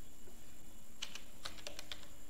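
Computer keyboard typing: a quick run of keystroke clicks in the second half, as a short command is typed at a terminal prompt.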